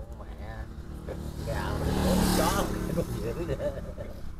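A motor vehicle passing, growing louder to a peak about two seconds in and then fading, under indistinct talking.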